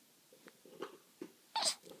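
A baby's short breathy chuckles: a few soft ones, then a louder one near the end.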